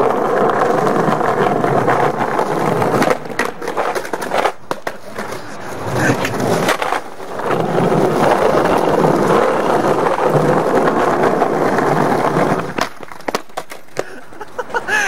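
Skateboard wheels rolling over paving tiles with a steady, grainy rumble, broken by a few brief gaps. Near the end come several sharp clacks as the rider bails and the board hits the ground.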